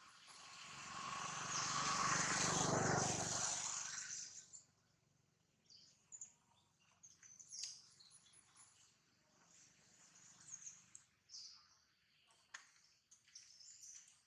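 A broad rushing noise swells up and dies away over the first four seconds or so, followed by faint, scattered bird chirps.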